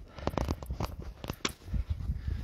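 Footsteps crunching in snow: a quick run of crisp crunches as the walker treads through the snow.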